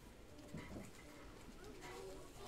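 Faint, indistinct voices in a quiet room: short murmured sounds about half a second in and again near the end.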